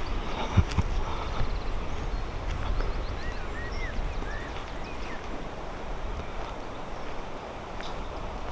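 Outdoor ambience: a low rumble of wind on the microphone, a sharp knock about half a second in, and a few short bird chirps in the middle.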